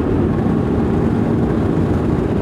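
A planing motorboat running at speed, heard from its cockpit: the steady drone of its twin Volvo Penta D6 diesel engines mixed with a loud rush of wind and water.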